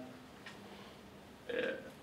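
Quiet room tone, then a man's short hesitant "uh" near the end.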